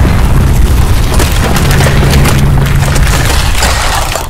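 Heavy low rumble with dense crackling and popping, thicker from about a second in: a road roller crushing rows of deodorant cans.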